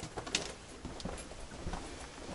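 Footsteps crunching on a cave floor of loose rubble and gravel, a few irregular steps.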